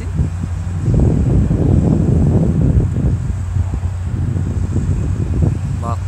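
Wind buffeting a phone's microphone, a low rushing rumble that swells about a second in and eases off after a few seconds, over a steady low hum.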